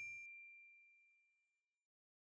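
Faint, fading tail of a single bright bell-like ding, a logo chime sound effect, its high tone ringing out and dying away within the first second or so.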